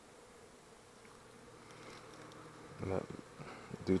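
Honeybees buzzing faintly in a steady hum over the frames of an open hive.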